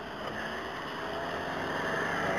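A vehicle moving slowly over wet tarmac: a low engine hum under the hiss of tyres on the wet surface, slowly getting louder.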